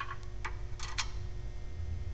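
A few light metallic clicks, about half a second and one second in, as a telescoping pickup magnet is worked down into the engine bay to fish out a dropped bolt. A low steady hum runs underneath.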